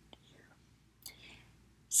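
A short pause in a woman's talk: a faint click, then a soft breath about a second in, and her voice starts again at the very end.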